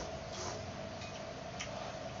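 Close-up eating sounds of spicy instant noodles being slurped and chewed: a few short clicks and smacks, over a steady faint hum.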